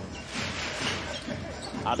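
A basketball being dribbled on a hardwood court, several bounces in quick succession.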